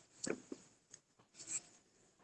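A few faint, brief scratching and rustling noises over a video-call line, like handling noise near a participant's microphone.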